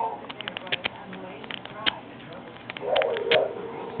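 Light, irregular clicking of a pick being raked across the pin stack of a Master Lock No. 1 laminated steel padlock under a tension wrench, dense through the first two seconds and sparser after. The clicks come just before the lock opens.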